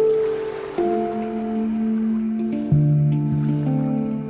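Handpan (steel hang-style drum) played by hand, single notes struck about once a second and left ringing so they overlap into a gentle melody, with a deep low note struck about two-thirds of the way through.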